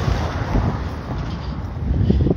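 Outdoor street noise with wind rumbling and buffeting on a handheld phone's microphone, a steady noisy hiss over an uneven low rumble.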